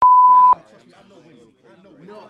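A censor bleep: a steady, single-pitched beep about half a second long that opens with a click and cuts off suddenly, covering a word. A person's speech carries on after it.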